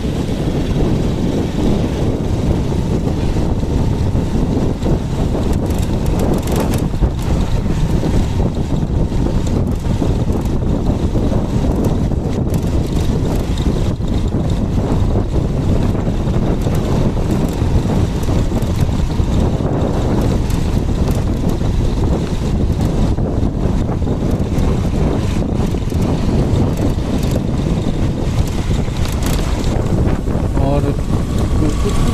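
Wind buffeting the microphone of a moving motorcycle, with the bike's engine running underneath; a loud, steady rush that starts abruptly as the ride gets going.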